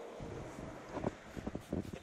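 A few short clicks and rustles as a small spray bottle and a microfibre cloth are handled, over a quiet low hum.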